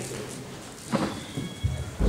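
Light, scattered audience applause and hall noise, fading, with a couple of short dull thumps about a second in and near the end.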